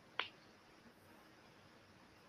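Near silence, broken once by a single short click about a fifth of a second in.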